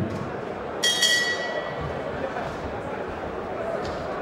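Boxing ring bell struck once about a second in, ringing and fading over about a second, signalling the start of round 2.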